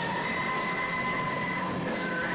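Rock band playing live and loud: a dense wall of distorted guitar with sustained high notes held over it.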